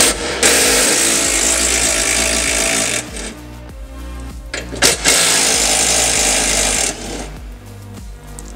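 Cordless impact driver with a Torx bit backing out the golf cart's seat bolts in two runs of about two to three seconds each, with a short pause between them.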